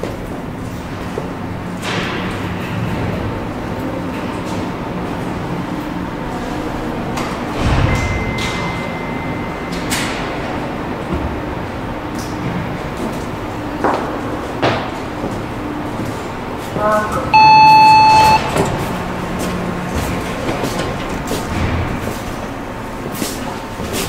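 Elevator arriving at the landing: a steady low machinery hum with scattered clicks, then a single electronic arrival chime about seventeen seconds in, the loudest sound, followed by the elevator doors sliding open.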